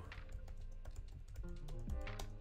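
Typing on a computer keyboard: a quick, continuous run of key clicks, about seven keystrokes a second, over soft background music.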